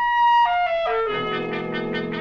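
Brass music cue from a radio drama: a trumpet plays a short falling line of single notes, then a lower brass chord comes in about halfway through and is held.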